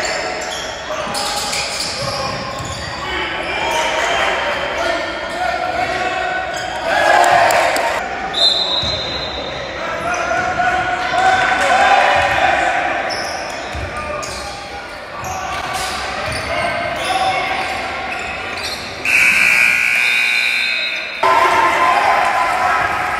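Basketball game in a large gym: spectators' voices and a ball dribbling on the court, echoing in the hall. A short, high steady tone sounds about eight seconds in, and a longer steady tone near the end.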